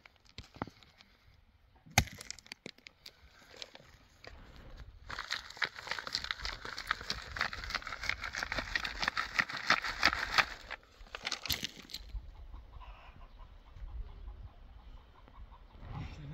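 Soil and grit rattling through a round wire-mesh hand sieve as it is shaken, a dense, rapid rattle lasting about five seconds in the middle, after a few scattered knocks. Faint chicken clucking near the end.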